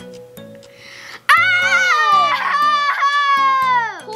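Two children letting out a long, high-pitched 'whoa' of amazement, starting about a second in and held for nearly three seconds, over background music with a steady beat.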